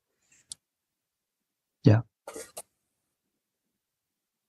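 A man's brief throat sound about two seconds in, likely a short cough or a 'yeah', followed by a short breathy rasp. There is a faint click just before. It is heard over a video call, with dead silence between the sounds.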